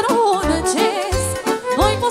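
A woman singing a Romanian folk party song (horă/sârbă style) into a microphone over a live band, her voice bending and ornamenting each note with quick trills over a steady bass beat.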